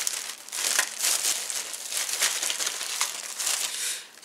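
Packaging crinkling and rustling as it is handled, a continuous crackly rustle with many small clicks.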